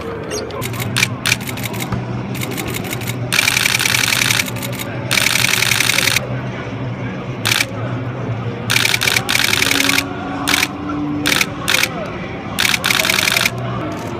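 DSLR camera shutter firing in rapid continuous-shooting bursts, several about a second long with a few short ones between.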